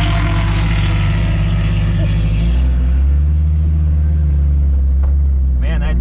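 Highly modified turbocharged Toyota Supra's inline-six idling, heard from inside the cabin; about two and a half seconds in its note drops to a deeper, louder drone.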